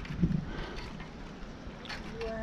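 Low, steady wind rumble on the microphone, with no clear single event standing out.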